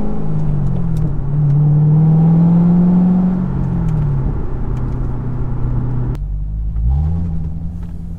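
C6 Corvette V8 pulling hard under throttle, heard from inside the cabin. The engine note drops in pitch twice, about a second in and again around four seconds, as at gear shifts, then falls away abruptly about six seconds in and picks up again shortly after.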